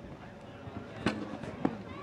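Two sharp knocks about half a second apart, each ringing briefly, typical of a horse's hooves rapping a show-jump pole.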